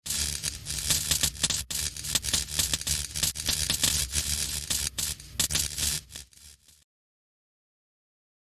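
Crackling fire-and-sparks sound effect over a low rumble, starting suddenly, fading near the end and cutting off about seven seconds in.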